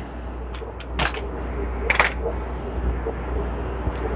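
Small aquarium-style air pump (air bubbler) humming steadily, with a few short clicks in the first couple of seconds.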